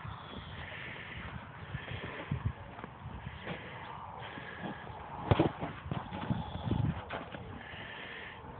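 A pony shoving a large plastic ball with its nose and front legs across a sand arena: irregular soft thuds of hooves and ball, with one sharper knock a little past the middle and a few more thuds after it.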